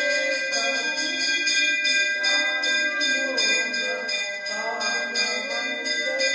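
A temple bell struck rapidly and repeatedly, about three strikes a second, its ringing tones overlapping without a break. Voices singing can be heard beneath the bell.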